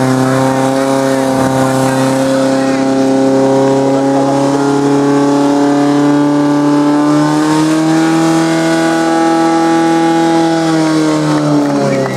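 Portable fire pump's engine running at full throttle with a steady high note while it pumps water through the hose lines to the nozzles. The pitch climbs slightly about eight seconds in and sags near the end.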